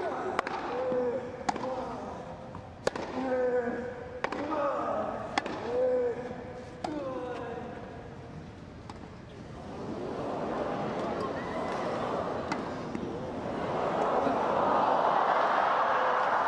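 Tennis ball struck back and forth on a grass court in a rally, a sharp pock about every second, some hits followed by a player's short grunt. From about ten seconds in, the crowd's noise swells into cheering and applause as the point is won.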